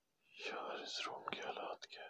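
A man whispering, breathy and unvoiced, with a couple of faint clicks near the end.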